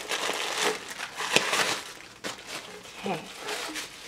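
Clear plastic wrapping crinkling and rustling as hands pull it around a boxed doll, busiest in the first two seconds, with one sharp snap about a second and a half in.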